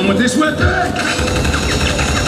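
Live show sound over the arena speakers: music with a voice over it, and a quick run of regular clicks starting about a second in.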